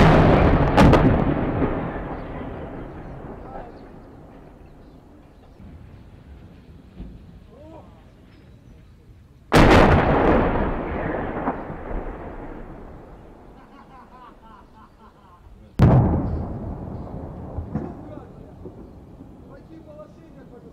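Heavy artillery explosions at a distance: sharp cracks, each followed by a long rolling echo that dies away over several seconds. There is a boom at the start with a second crack under a second later, then one about ten seconds in and another about sixteen seconds in.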